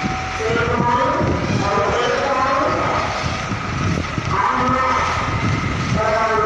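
Heavy diesel engine of a container tractor-trailer running at low speed as the rig manoeuvres, with people's voices talking over it.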